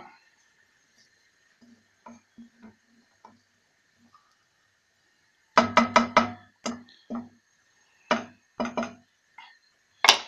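Wooden spatula knocking against a wok while stirring a simmering coconut-milk sauce: a few faint taps, then a quick run of sharp wooden knocks about halfway through and a couple more near the end.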